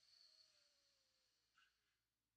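Near silence, with a faint breath out through one nostril in the first half second or so.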